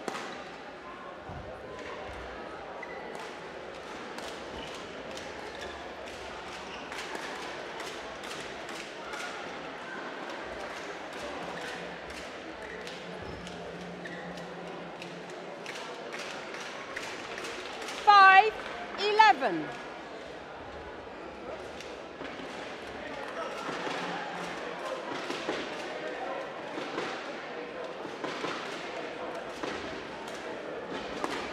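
Badminton in a sports hall: sharp clicks of rackets striking the shuttlecock and feet landing on the court, over the chatter of a large hall. A little past the middle come two loud, high squeals, the second sliding down in pitch.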